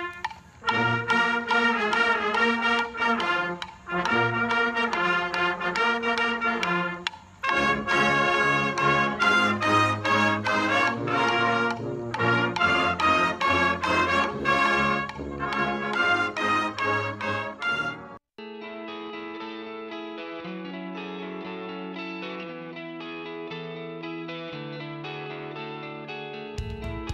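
High school marching band brass section playing outdoors in loud phrases, with short breaks about 4 and 7 seconds in. About 18 seconds in it cuts off abruptly and quieter music with held chords takes over.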